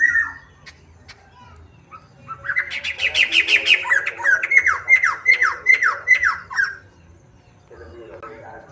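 A caged poksai hitam (black-throated laughingthrush) gives a short call, then about two seconds in a loud song phrase of rapid, sharply falling whistled notes. The notes come quickly at first, then slow for the last few before the phrase stops near the end.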